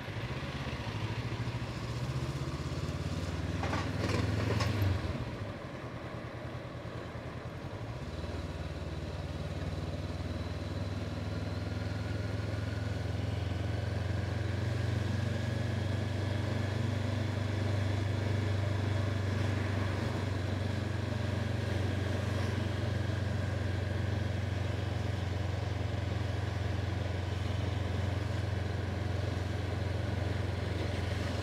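Honda CB500F's parallel-twin engine running while riding in city traffic. There is a brief louder rush of noise about four seconds in. The engine note then drops for a few seconds and comes back steady for the rest, rising slightly now and then.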